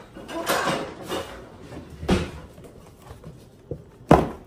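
Kitchen handling sounds: items and utensils moved about at the counter, with rustling and a sharp knock about two seconds in.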